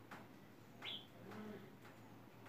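A single short, rising bird chirp about a second in, over faint background noise, followed by a brief low note.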